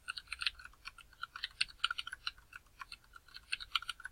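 Typing on a computer keyboard: a fast, irregular run of keystrokes with a short lull past the middle.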